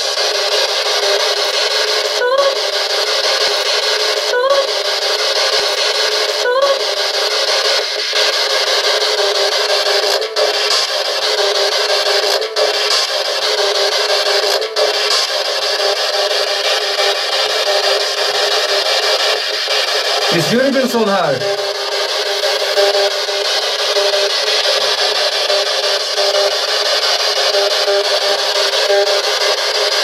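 Spirit box sweeping through radio frequencies, giving steady static from its small speaker. The static breaks off briefly every couple of seconds in the first half, with short snatches of voice-like sound; the longest comes about twenty seconds in.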